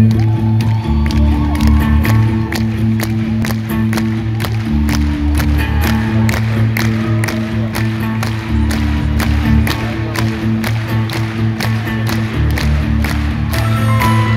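A live band playing through an arena sound system, heard from the audience: sustained deep bass notes under a steady beat of about four drum hits a second. Crowd noise runs underneath.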